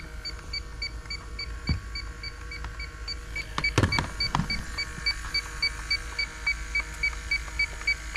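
Inficon D-TEK Stratus refrigerant leak detector beeping steadily, about three short beeps a second, while it reads around 22 ppm with no leak present: a false detection from a sensor that will not zero. A few knocks about halfway as the detector is set down on a metal bench.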